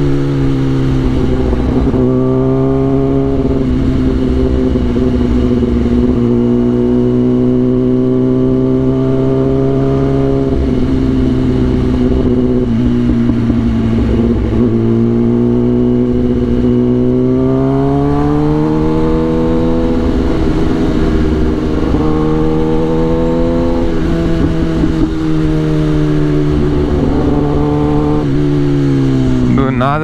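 Kawasaki ZX-10R's inline-four engine running steadily under light throttle, its pitch rising and falling gently with small throttle changes. There is a longer climb in pitch about two-thirds of the way through and a drop back near the end.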